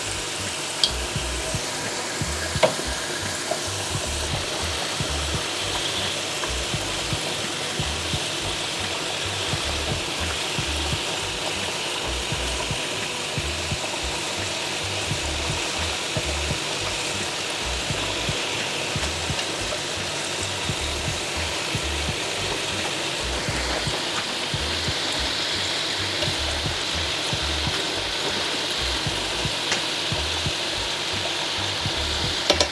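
Chicken and potato patties deep-frying in moderately hot oil in a stainless steel pan, a steady even sizzle throughout. A couple of light clicks in the first few seconds as a wooden skewer touches the patties and pan.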